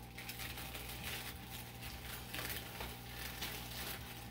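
White wrapping paper rustling and crinkling as a small Beyblade part is unwrapped by hand, with faint small clicks of handling.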